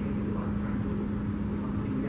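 A steady low room hum with one constant droning pitch running through it, and no distinct event standing out.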